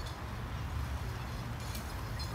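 Steady low rumble and hiss of outdoor background noise, with a faint click near the end.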